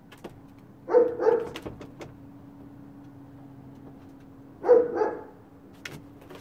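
A dog barking in two quick double barks, one about a second in and another near the five-second mark, over a steady low hum.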